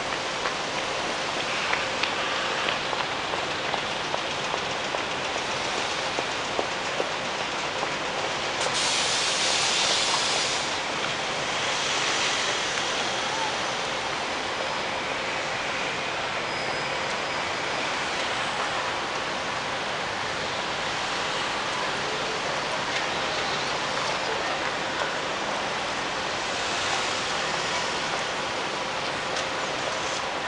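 Steady outdoor city din, a continuous wash of noise, with a louder hiss lasting about two seconds about nine seconds in.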